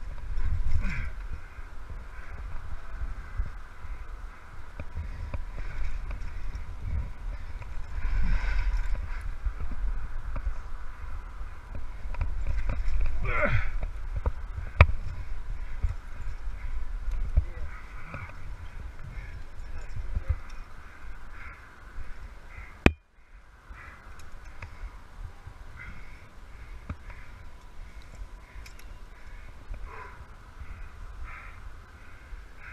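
Low rumble of wind and rubbing on a body-worn camera while a climber moves up a rock face, with the climber's breathing and effort noises. There is a single sharp click about 23 seconds in, then a brief dropout.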